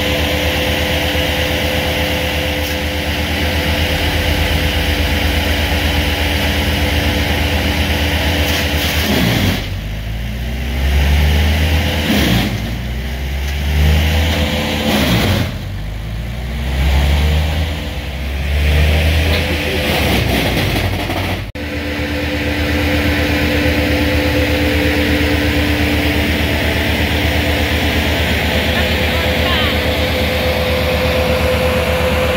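Heavy diesel truck engine running at a steady idle, then revved up and down about four times over some twelve seconds before dropping back to a steady idle abruptly.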